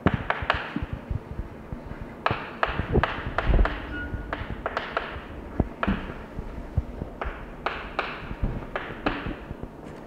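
Chalk writing on a blackboard: irregular sharp taps and short scrapes as letters are written, with a few dull low thuds, the loudest about three and a half seconds in.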